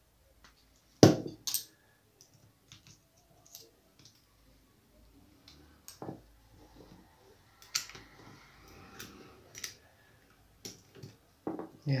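Scattered clicks and knocks of a metal baitcasting reel being handled and taken apart by hand, with a sharp knock about a second in and another about six seconds in.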